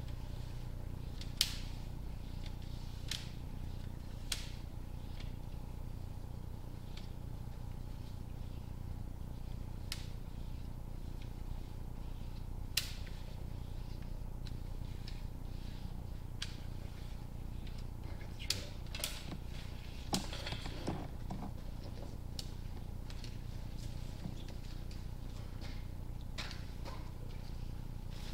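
Sewer inspection camera and its push cable being pulled back out of a drain pipe: a steady low hum with scattered sharp clicks at irregular intervals, some close together.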